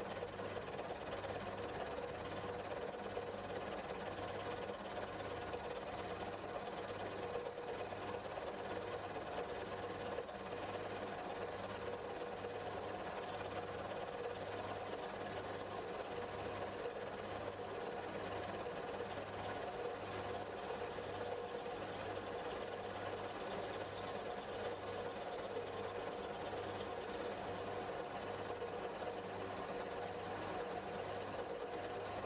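Milling machine spindle running steadily while a two-flute slot drill cuts metal at a reduced feed rate. It makes a constant hum with a low pulse a little over once a second.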